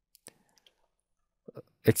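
A few faint, sharp clicks in near silence during the first second, then a man's voice starts speaking near the end.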